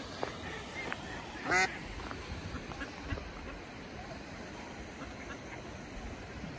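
A duck quacks once, loudly, about a second and a half in, over a steady background hiss.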